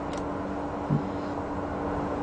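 A pause between spoken sentences, filled with a steady low hum and hiss of background noise, with one brief low sound about a second in.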